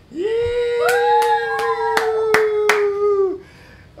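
People cheering a long, drawn-out "yeah" that lasts about three seconds. A second and then a third higher voice join in, while hands clap about six times.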